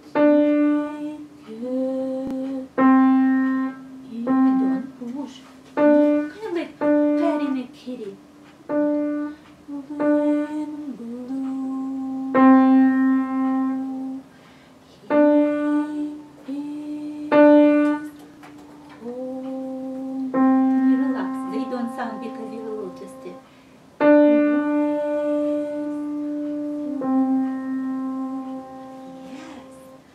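Piano played slowly with single notes, alternating between middle C and the D above it, each note struck and left to ring. This is a beginner's sad two-note song played with one finger of each hand. A woman's voice is heard softly now and then between the notes.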